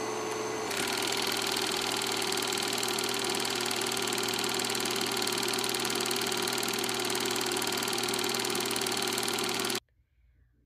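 Film projector running with a steady, fast mechanical clatter. It grows fuller just under a second in and stops abruptly near the end.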